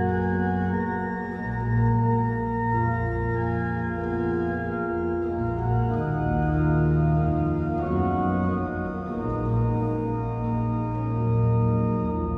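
Pipe organ playing slow sustained chords over deep held bass notes, the harmony shifting every two seconds or so.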